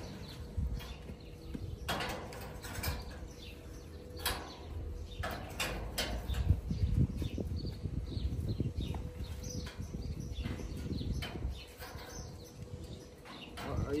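Irregular metallic clinks and knocks, a dozen or so spread unevenly, as steel bars and hand tools are set into and shifted on a steel gate frame.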